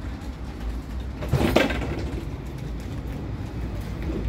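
Interior of a Budapest line 4 tram: a steady low rumble of the tramcar, with one short, loud clatter about a second and a half in.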